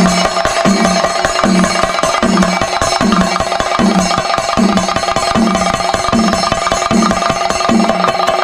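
Traditional percussion music: rapid, continuous drum strokes over a deeper drum beat that falls about every three-quarters of a second, with some steady ringing tones above.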